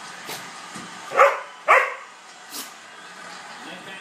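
A labradoodle gives two barks about half a second apart while play-fighting with another labradoodle.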